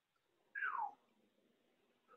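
A single brief squeak that falls in pitch, about half a second in, against faint room tone.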